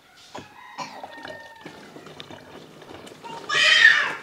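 Juice poured from a plastic jug into a plastic bottle, faint, with a few steady tones in the first second or so. About three and a half seconds in comes a short, loud, high-pitched cry.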